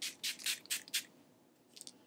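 Makeup Revolution Fix and Glow setting spray misted onto the face from a pump bottle: four or five quick hissing spritzes in the first second, then a couple of faint ones near the end.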